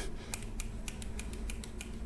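New Bee NB9 over-ear Bluetooth headphones being shaken in the hand, rattling and clicking lightly several times a second in an uneven rhythm.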